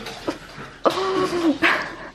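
A woman's short, level voiced sound about a second in, followed by a brief breathy burst near the end, in a small room.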